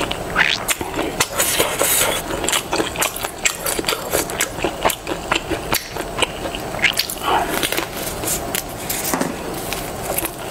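Close-miked eating sounds: chewing with wet, crackly mouth noises and many small clicks and smacks as a chili-oil-dipped roll is eaten.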